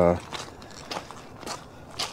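Footsteps crunching on crushed-stone gravel, a few steps in a row, after a short spoken "uh" at the very start.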